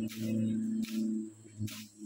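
A steady low engine hum that stops about a second in, with three short rustles of grass and weeds being pulled by hand.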